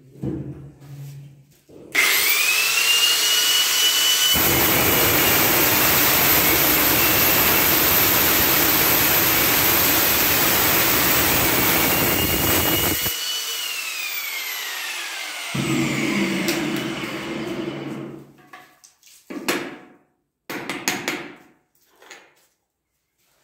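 Handheld electric power cutter spinning up with a rising whine, then cutting a socket opening in a porcelain wall tile with a dense grinding noise for about nine seconds. It winds down with a falling whine, followed by a short lower run and a few knocks near the end.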